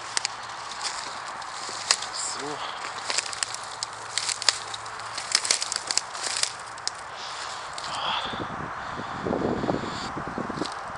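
Dry stems and twigs rustling and snapping as someone pushes through brush on foot, a steady run of crackling ticks. Near the end come heavier, low thudding footfalls.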